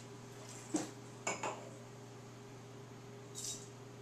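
Glass and ceramic clinks as a wine glass is put down and a ceramic spit cup is handled: one clink, then two quick ones. Near the end comes a short hissing spit of wine into the cup, part of a tasting.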